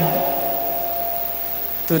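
Steady hiss and fan-like room noise through the church sound system, with a faint steady high tone held through the pause. Speech starts again just at the end.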